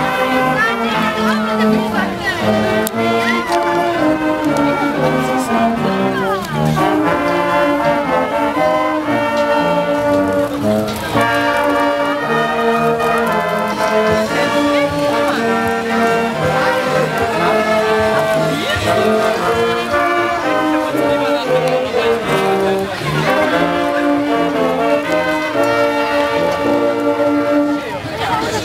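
Marching brass band playing a tune in sustained, changing chords, with crowd voices underneath.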